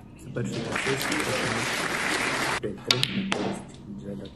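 Audience applauding for about two seconds, then cut off abruptly, followed by two sharp clicks.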